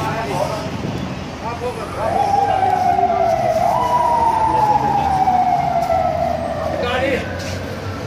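A siren sounding in the street: one long tone that starts about two seconds in, jumps up in pitch midway, then slides slowly down and fades near the end. Brief voices are heard at the start and near the end.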